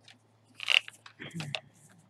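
Cardstock being slid and handled on a paper trimmer: two short papery rustles or scrapes, the first about three quarters of a second in and the second soon after.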